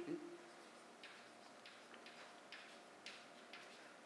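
Chalk writing on a blackboard: faint, short scratchy strokes and taps, coming in small clusters as the letters are written.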